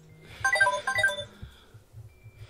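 Smartphone ringtone: a short, bright melody of chiming notes repeating the same phrase, stopping about a second and a half in as the call is picked up. A low pulsing beat runs underneath.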